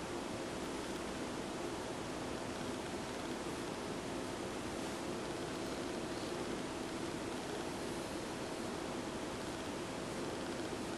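Steady room noise: an even hiss with a faint low hum beneath it, with no distinct events.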